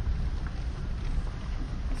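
Car driving slowly along a rough dirt forest road, heard from inside the cabin: a steady low rumble of engine and tyres.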